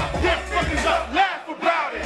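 Live hip hop performance over a club sound system: a rapper shouting into the microphone over the beat, with the crowd yelling along. The bass of the beat drops out for a moment near the end.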